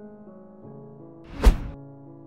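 Slow background piano music with a single deep thud-like hit about one and a half seconds in, an editing transition effect.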